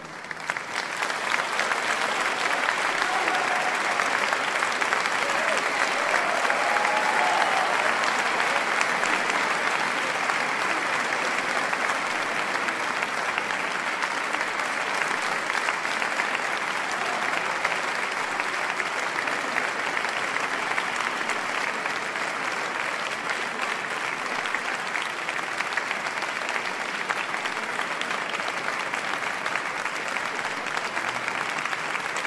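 Audience applauding, swelling up within the first second and then going on steadily, with faint voices mixed in.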